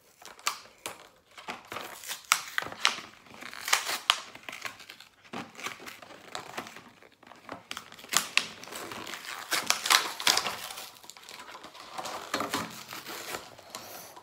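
Card packaging being torn open and crinkled by hand: a long run of irregular crackles and rustles.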